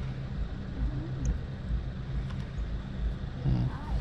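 A steady low mechanical hum, such as a running motor makes, with faint voices briefly about a second in and again near the end.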